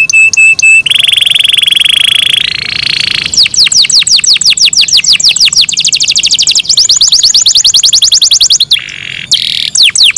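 Domestic canary singing loudly: a continuous song of rapidly repeated notes, changing every second or two from a fast trill to a run of quick downward-sweeping whistles and then a higher rapid trill, with a short break near the end.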